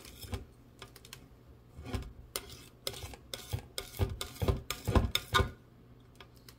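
Palette knife scraping and tapping through thick paint on a palette: irregular short scrapes and clicks. They bunch together in the second half, and the loudest strokes come about five seconds in.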